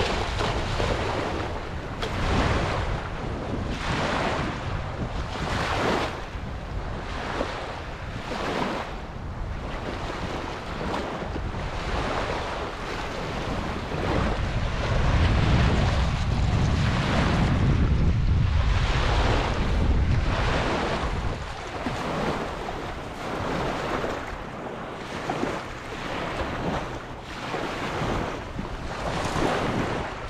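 Small lake waves lapping and washing onto a pebbly shore, one swell about every second or two, with wind buffeting the microphone in a low rumble that is strongest in the middle.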